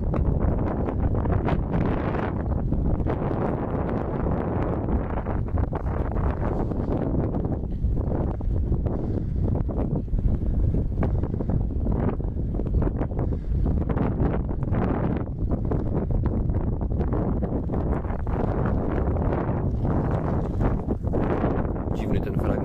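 Wind buffeting the microphone of a camera on a moving bicycle, a steady, uneven low rush throughout.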